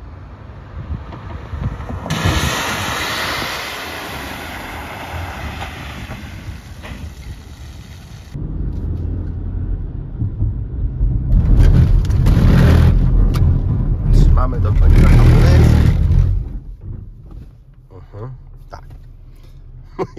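A Renault car driving through standing water on a wet skid-pad, its tyres hissing through the spray, the hiss falling in pitch as it goes by. Then, heard inside the cabin, a heavy low rumble of tyres and engine swells for several seconds as the car runs over the rear-axle kick plate and skids, and fades out near the end.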